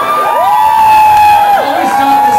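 Two long, drawn-out whoop-like calls from one voice, each gliding up, held level and dropping away, over crowd noise in a club.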